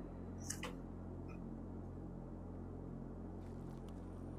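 Quiet pause in a video-call recording: a low, steady electrical hum with faint background hiss, and one brief soft hiss about half a second in.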